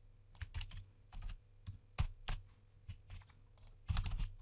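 Typing on a computer keyboard: about a dozen separate key clicks at an uneven pace, with short pauses between them.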